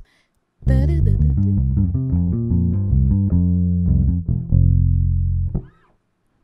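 Electric bass guitar playing a gospel bass lick: a quick run of plucked notes beginning about half a second in, ending on a held low note that stops just before the end.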